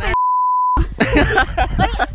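A single censor bleep: one steady pure tone, about half a second long, dubbed over a spoken word, with all other sound dropped out beneath it.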